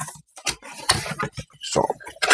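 Cardboard box being opened by hand: a few short scraping and knocking noises as the tab and flaps slide apart, with a man's voice starting near the end.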